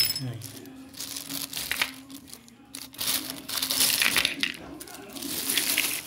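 Clear plastic bag rustling and crinkling as it is handled, with the metal engine parts inside clinking together; a sharp metallic click right at the start.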